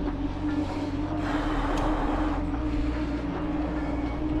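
Mountain bike rolling along asphalt at a steady speed: knobby Maxxis Minion tyres give a steady hum at one pitch, over wind rumbling on the action camera's microphone.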